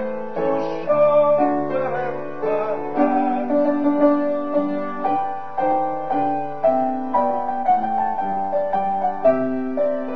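Piano playing an instrumental passage between sung verses of a song, a steady run of chords and melody notes.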